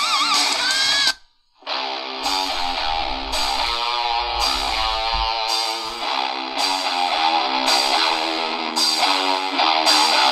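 Music played through the small built-in speaker of a Horologe HXT-201 pocket AM/FM radio, received on FM from a low-power transmitter. It cuts out for a moment about a second in, then resumes with a regular beat. There is little bass.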